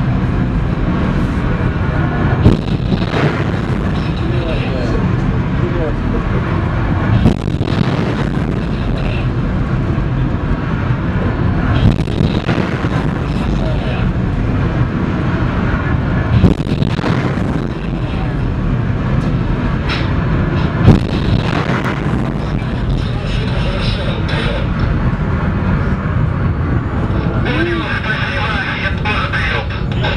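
Missiles launching from a warship: a loud continuous rushing roar with sharp peaks every four to five seconds, and voices over it.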